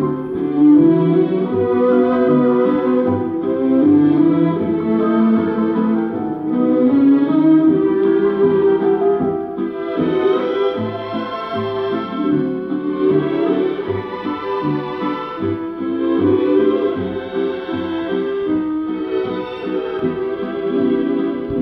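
A 78rpm shellac record playing music through a portable record player's built-in speaker; the sound is dull and narrow, with no crisp treble.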